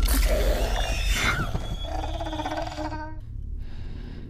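Horror film soundtrack: a low rumble with a few short gliding pitched sounds and eerie sustained tones, dying away about three seconds in.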